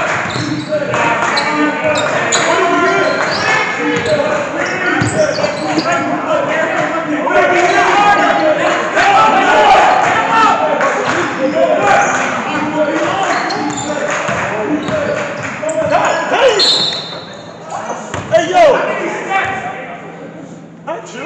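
A basketball bouncing on a hardwood gym floor during a game, with many short sharp impacts, over steady shouting and chatter from players and spectators, all echoing in a large gymnasium.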